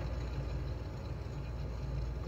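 Steady low hum of background room noise, with no speech and no distinct events.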